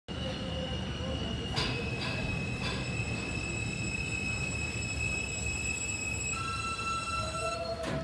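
An R160A subway train pulls into an underground station and slows, its wheels rumbling on the track under a steady high-pitched squeal. The squeal changes to a new set of tones about six and a half seconds in, and a rising tone comes in as the train comes to a stop. A few sharp clicks sound along the way, the last and loudest near the end.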